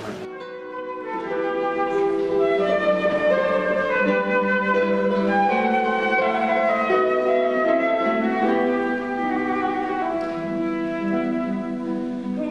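Concert flute playing a slow melody of long held notes, accompanied by a classical guitar quartet. The music starts just after a cut, right at the start.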